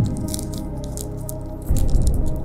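A paper sugar packet crinkling as it is squeezed and turned between fingers, with light, brief rustles and the granules shifting inside. Background music plays steadily underneath.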